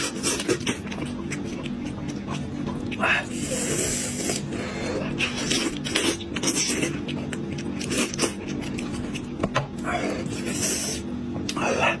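Close-up mukbang eating sounds: a man sucking and biting meat off the bones of a cooked sheep's head, with lip smacks, wet slurps and chewing coming in irregular bursts over a steady low hum.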